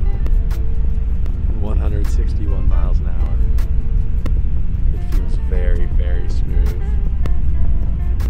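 Steady low rumble of a KTX high-speed train running at about 160 mph, heard inside the passenger cabin.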